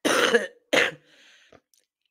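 A person clearing their throat: two short, rough bursts in quick succession in the first second.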